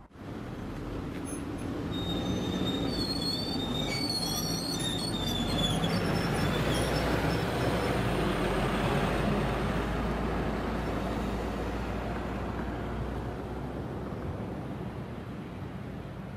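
City midibus driving off along the road: engine and tyre noise builds over the first few seconds, then fades as the bus goes into the distance.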